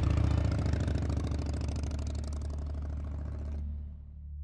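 Air-cooled Loncin motorcycle engine running at steady low revs, with a rapid even exhaust pulse. It grows gradually quieter and is cut off just before the end.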